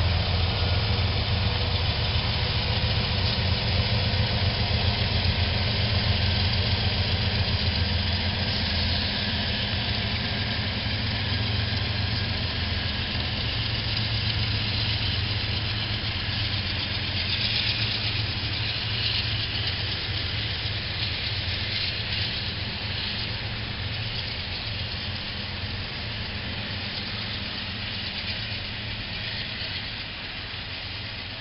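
Norfolk Southern diesel freight locomotives running past with a steady low engine drone, followed by the continuous rumble and rattle of freight cars rolling by. The engine drone is strongest in the first several seconds, and the overall sound fades slowly as the train moves on.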